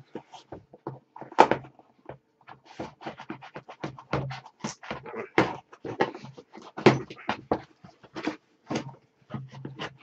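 Scissors cutting through packing tape on a cardboard shipping box: an irregular run of snips, scrapes and rustles with a few sharper clicks.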